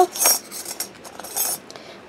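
Thin metal craft cutting dies clinking and rattling as they are picked up and handled, in two short bursts: one just after the start and one about a second and a half in.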